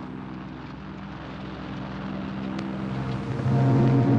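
Engines of a Vickers Wellington bomber running steadily on the ground. In the last second, louder music comes in over it.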